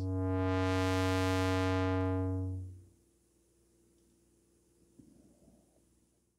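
Low, buzzy synthesizer tone played through the SVF-1 state-variable Eurorack filter, its cutoff swept up until the tone turns bright and then back down, dying away after about three seconds.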